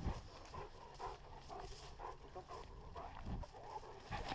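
Police dog panting rapidly as it runs, picked up close by a camera strapped to its back, with rustling as it pushes through grass and undergrowth.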